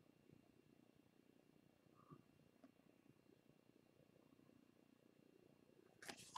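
Near silence: faint low room tone.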